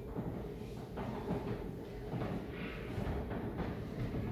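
Low, steady room noise with a few faint knocks and thuds.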